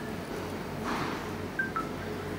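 A short rustle of handling, then a quick two-note electronic beep from an LG Nexus 4 smartphone, the second note lower.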